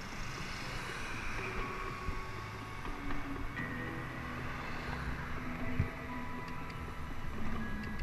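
Wind and road noise from riding a bicycle through city traffic, with faint music playing over it.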